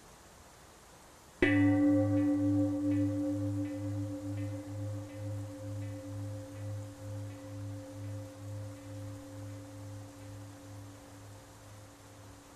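A bell is struck once about a second and a half in. It rings on with a slow, pulsing waver and fades gradually over the next ten seconds.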